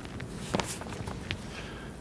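A man's footsteps: a few soft steps over quiet room tone.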